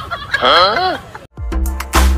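A short, shrill cry that rises and falls in pitch, squawk-like, lasting about half a second. After a brief gap, intro music starts with a deep bass beat near the end.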